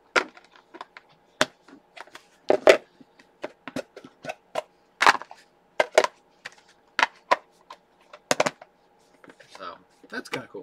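Plastic meal boxes clacking and knocking together as they are nested inside one another and handled: an irregular run of sharp clicks and taps.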